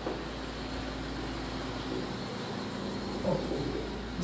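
Steady low mechanical hum with a faint background hiss, unchanging through the pause, and a short faint vocal sound a little past three seconds in.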